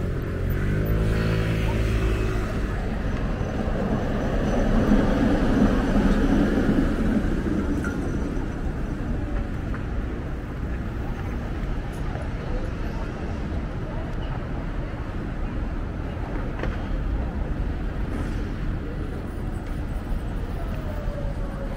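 City street traffic: a vehicle goes by most loudly about four to eight seconds in, then a steady rumble of traffic.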